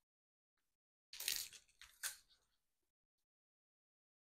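Thin die-cut card letters being pushed out of a card panel by hand: a few short rustles and crackles of card about a second in, with another sharp crackle about a second later.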